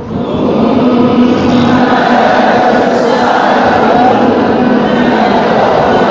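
A large group of men reciting a Quran verse together in unison, answering the teacher's line in a recitation drill. Many voices blur into one dense, steady mass.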